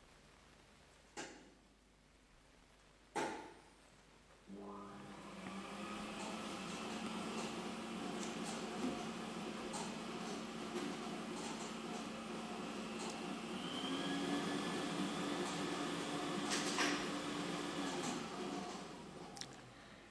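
A lottery ball-drawing machine starts after two light clicks and runs with a steady motor hum while the balls tumble and tick against the clear drum. The hum steps up in pitch about two-thirds of the way through, then winds down as a ball is drawn.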